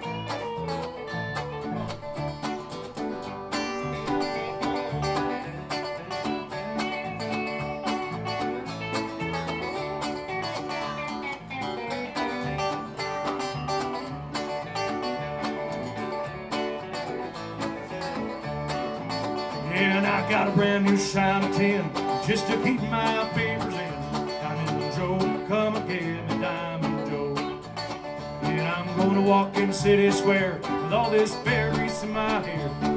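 Live bluegrass-style band music: strummed acoustic guitar with electric guitar and keyboard playing a break between sung verses. It grows louder and busier about twenty seconds in and again near the end.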